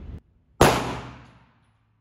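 A single 9 mm pistol shot from a Steyr C9-A1, about half a second in: a sharp crack whose echo in the indoor range dies away over about a second.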